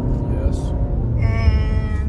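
Steady road and engine rumble inside a moving car's cabin. In the last second a short, held, high-pitched tone sounds over it.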